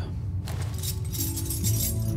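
A ring of metal keys jangling, starting about half a second in, over low sustained background music.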